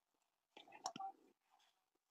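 A brief, faint whisper from a woman about half a second in, with one sharp click in the middle of it.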